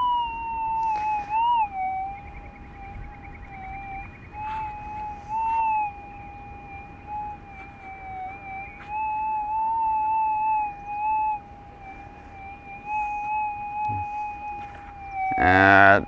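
Minelab GPX 6000 gold detector's threshold tone from its 11-inch coil: a continuous electronic hum that wavers slightly in pitch and swells and fades in loudness as the coil is swung. It is running noisy at the water's edge on manual sensitivity 10, hard to listen to all day, which leaves the 11-inch coil a no-go on this beach.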